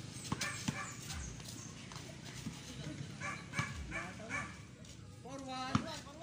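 A dog barking, four quick barks in a row midway through, over the voices of players, with a basketball thudding on a dirt court now and then.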